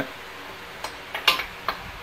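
A few light metallic clicks, four in about a second starting near the middle, from a wrench on the crankshaft bolt as the Chevy 454 big-block's bare crankshaft is turned over by hand with one finger.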